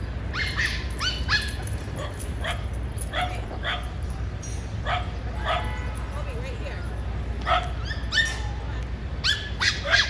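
A small dog barking repeatedly in short, high-pitched barks, several coming in quick pairs, over a steady low city rumble.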